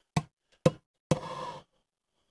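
Three short knocks or clicks, the last a little longer, while charcoal in a ceramic kamado grill is being lit.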